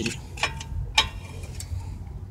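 A large flat screwdriver clicking against a car's front brake caliper and pad as it levers the caliper piston back to make room for new pads: two sharp metal clicks about half a second apart.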